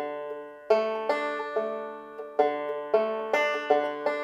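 Five-string banjo picked in a backup pattern on a D chord: about eight plucked notes, each attack ringing on briefly.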